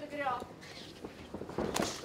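A man's voice calling out briefly at the start, then a quieter stretch of ring noise with a few sharp knocks, the loudest near the end.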